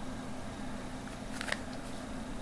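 Quiet room tone with a low steady hum, and a couple of faint light clicks about one and a half seconds in from a handheld smartphone being handled.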